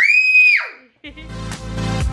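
A child's high-pitched excited squeal that rises, holds briefly and falls away within the first second, followed about a second in by electronic dance music with a steady beat.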